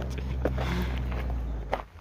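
Footsteps of a hiker walking, over a steady low rumble on the microphone.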